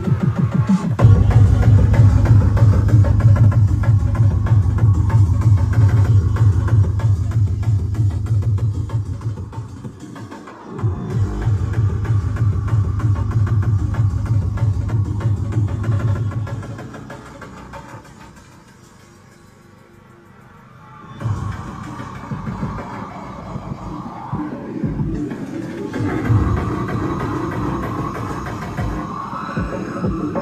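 Loud electronic tekno dance music played through a free-party sound system, with a heavy, sustained bass. The bass cuts out for a moment about ten seconds in. The music then drops to a quiet break for a few seconds past the middle and picks back up with a lighter low end.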